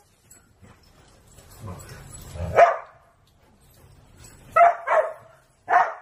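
Whippets barking in excitement about a run: four short, sharp barks, the first about two and a half seconds in and the other three in quick succession near the end, after a stretch of rustling movement.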